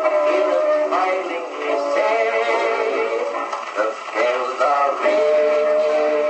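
Victrola VV 8-4 acoustic phonograph playing an old 78 rpm record of a song with band accompaniment. The sound is thin, with no deep bass.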